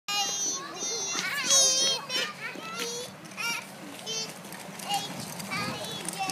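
Young children's voices calling out and chattering in high-pitched tones, loudest about a second and a half in.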